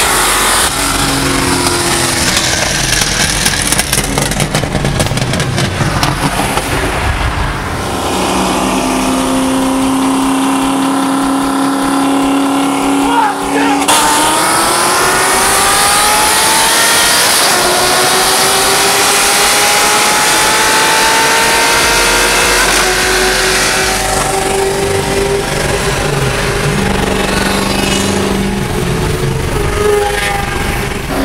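V8 engines of high-horsepower street cars, a Ford Shelby GT500 and a C6 Corvette Z06, running hard side by side in a roll race. The engine pitch holds steady, then climbs under full acceleration, with a gear change about 14 seconds in and the pitch rising again after it.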